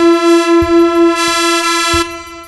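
EML 101 analog synthesizer holding one buzzy, steady-pitched note that pulses in volume about four times a second, its tone growing brighter about halfway through as the panel knobs are turned.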